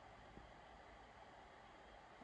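Near silence: faint steady room tone of low hum and hiss, with one tiny tick about a third of a second in.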